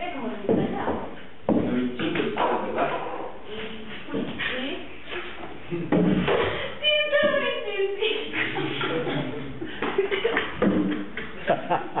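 People speaking throughout, with a higher, wavering voice held for about a second about seven seconds in.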